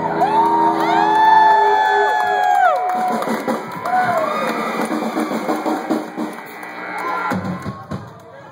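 Live rock band playing loudly while the crowd cheers and whoops. Several long sliding tones rise and fall over the first three seconds above a held chord, then a noisier stretch follows with a short swooping whoop about four seconds in.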